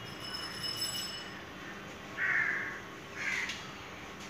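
A crow cawing twice: a harsh call about two seconds in, then a shorter one a second later.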